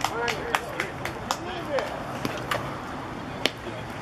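Voices of players and spectators calling out across a baseball field, faint and with no clear words, over a scatter of short sharp clicks and knocks, one louder click about three and a half seconds in.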